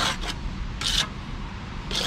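Steel notched trowel scraping wet tile adhesive in short strokes, three of them about a second apart, over a steady low rumble.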